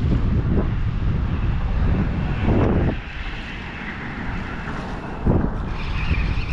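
Wind buffeting the microphone, a loud low rumble that eases about halfway through, with a brief knock near the end.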